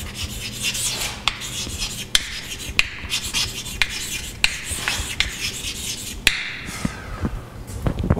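Chalk writing on a blackboard: scratchy strokes punctuated by sharp taps as the chalk meets the board, stopping about six seconds in.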